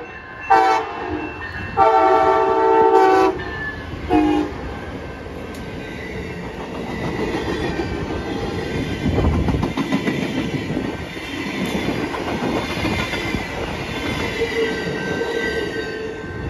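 Amtrak Siemens SC44 Charger diesel locomotive sounding its horn three times, short, long and short, in the first few seconds. The passenger train then rolls past with its wheels clicking over the rail joints, loudest about nine seconds in.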